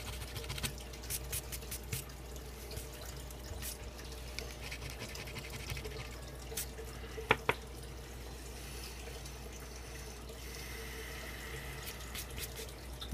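A coin scratching the latex coating off a scratch-off lottery ticket: faint, intermittent scrapes and small clicks, with two sharper clicks about seven seconds in, over a steady low hum.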